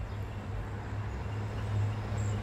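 Low, steady rumble of street traffic: a vehicle's engine and tyres on the road, growing slightly louder as it approaches.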